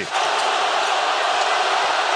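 Steady crowd noise from a large basketball arena audience, an even wash of many voices with no single call standing out.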